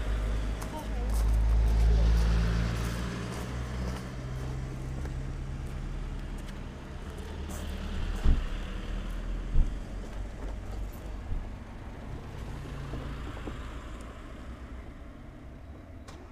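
A car's engine running close by as it drives along the road, loudest about two seconds in and then fading away. Two sharp knocks come about halfway through.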